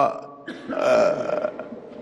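A man's voice making a drawn-out, rough throat sound between phrases, starting about half a second in and lasting about a second: a hesitation or throat-clearing noise, not words.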